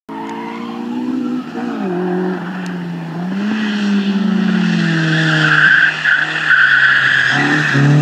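Honda CRX's D16Z5 1.6-litre four-cylinder engine driven hard, its revs rising and falling through the corners, with tyres squealing loudest around the middle. Near the end the engine revs up in short, quick rising bursts.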